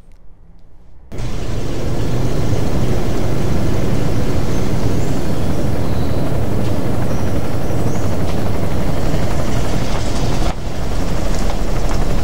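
Helicopter hovering overhead: loud, steady rotor and engine noise that cuts in suddenly about a second in and dips briefly near the end.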